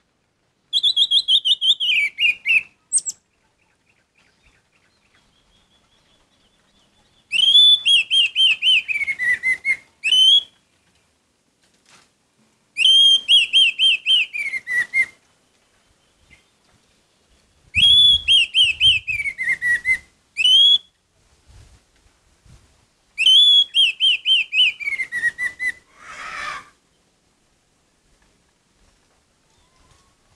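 Orange-headed thrush singing: five loud phrases about five seconds apart, each a quick run of clear notes stepping down in pitch, with a short rougher note near the end.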